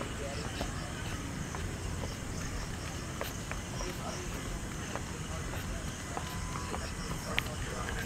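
Steady outdoor background noise with a low rumble, faint distant voices and a few light clicks.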